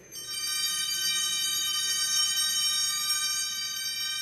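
Altar bells rung at the elevation of the chalice during the consecration: several high, bright tones start just after the priest falls silent and ring on steadily, beginning to fade near the end.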